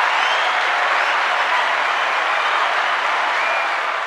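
Crowd applause sound effect: dense, steady clapping from a large crowd, played at full level and stopping as the talking resumes.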